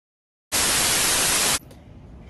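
A burst of TV-style static hiss, about a second long, that starts abruptly out of dead silence and cuts off just as sharply, leaving faint room tone: an editing transition effect.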